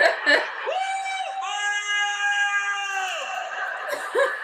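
High-pitched, drawn-out squeal of laughter: a few short bursts, then one long held note of about two and a half seconds, over faint audience laughter.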